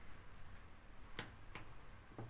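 Taps on a smartphone held in the hands: two faint clicks about a third of a second apart, a little past a second in, over quiet room tone.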